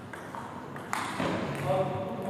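A table tennis ball struck by a paddle, a sharp click about a second in with a lighter tap just after, then voices calling out.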